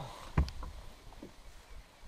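One sharp knock on the bass boat's deck about half a second in, followed by a few faint taps.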